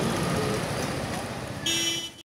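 Street traffic with motorbikes passing, then a short vehicle horn beep near the end.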